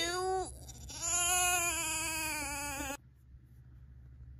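Crying in a baby's voice: a short wavering cry, then a long, steady, high-pitched wail that cuts off suddenly after about three seconds.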